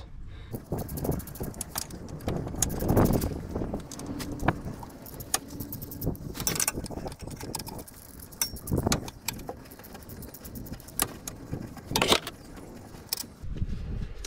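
Ratchet wrench clicking in quick runs as the gearbox bellhousing bolts are undone, with metallic clinks and a few louder knocks of tools and bolts against the gearbox casing.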